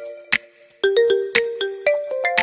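Background music: a sparse melody of held notes over a light clicking beat.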